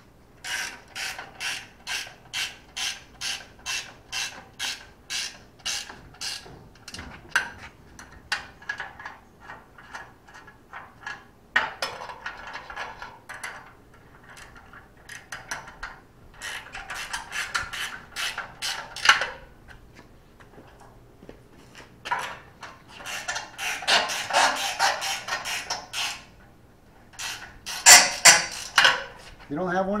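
Ratcheting combination wrench (a Matco gear wrench) clicking as it is swung back and forth on a bolt. It goes at about two clicks a second for the first ten seconds, then in several shorter, faster runs.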